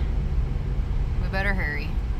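Steady low rumble of a car heard from inside the cabin, with a short spoken sound about one and a half seconds in.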